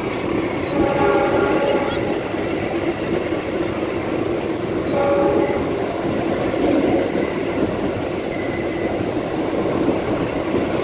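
A train's locomotive horn sounding twice, a blast of about a second near the start and a shorter one about five seconds in, over the steady rumble of the train running, heard from a carriage window.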